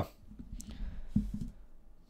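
Lenormand cards being handled and laid on a wooden table: a few soft taps of card on wood and a small click, about half a second to a second and a half in.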